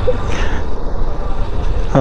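Honda motorcycle engine idling with a steady low rumble while stopped.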